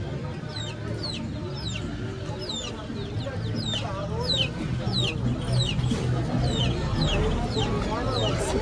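Caged poultry peeping: a steady run of short, high-pitched, falling chirps, about two a second, over a murmur of crowd voices.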